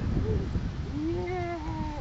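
A toddler's drawn-out wordless vocal sound, about a second in, lasting over a second and falling slightly in pitch at the end, over a low wind rumble on the microphone.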